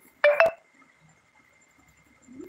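A short electronic beep of two quick notes, the pitch stepping up once, ending in a sharp click about half a second in.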